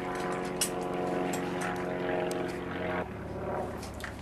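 A steady mechanical drone with a strong, even pitched hum, switching abruptly to a lower, quieter hum about three seconds in, with a few light clicks over it.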